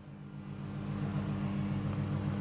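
Steady low mechanical hum of a waste-sorting conveyor belt's drive running, a few steady low tones that fade in during the first half second.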